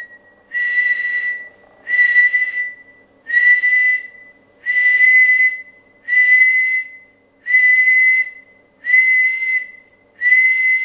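A person whistling one steady, high note in repeated blasts of about a second each, seven times in a row. The whistle is sent into the transmitter's microphone to drive the AL-811H valve amplifier to its peak output for a power test.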